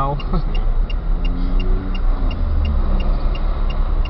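Car cabin noise: a steady low engine and road rumble, with a regular light tick about three times a second.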